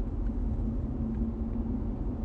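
Steady low rumble with a faint constant hum under it: background noise in a pause between spoken sentences.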